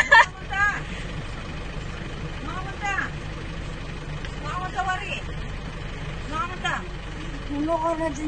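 A steady low rumble of a car heard from inside the cabin, with short snatches of conversation over it.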